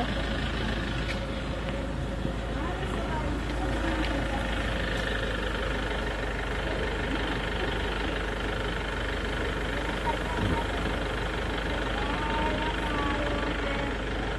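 A motor vehicle engine idling steadily.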